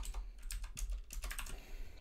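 Typing on a computer keyboard: a fast, uneven run of key clicks as a line of code is entered.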